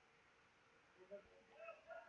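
Near silence: faint room tone, with a faint, drawn-out animal call beginning near the end.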